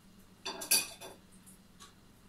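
Tableware clinking: a short clatter of a few quick clinks about half a second in, the sharpest one ringing briefly.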